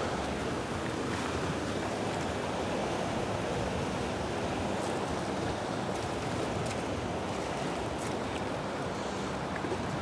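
Steady rushing of a fast-flowing river's current, an even wash of water noise with no breaks.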